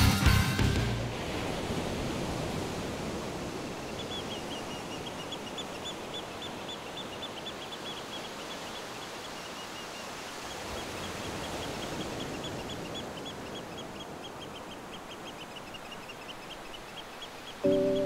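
Rock music fades out in the first second, leaving a steady outdoor hiss. Over it runs a rapid series of short high chirps, about five a second, from about four seconds in until near the end. Soft music comes in just before the end.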